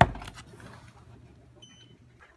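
A sharp knock at the start, then a low hum and a single short, high electronic beep near the end.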